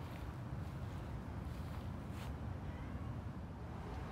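Faint outdoor background noise: a low, steady rumble with a couple of soft clicks about two seconds in.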